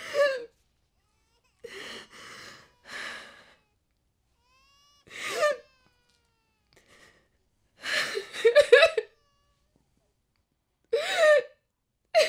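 A woman sobbing: shaky, breathy intakes of breath and high, wavering cries in short bursts every second or two. A louder run of sobs comes about eight seconds in, and another near the end.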